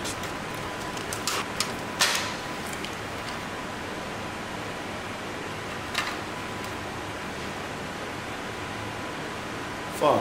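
Electrical tape being wrapped around a wiring harness and a tape measure: a few short crackles and clicks, the sharpest about two seconds in and another near six seconds, over a steady hiss of room noise.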